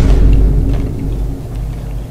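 A deep, booming meme sound effect added in the edit: a sudden low boom whose heavy rumble fades away over about two seconds.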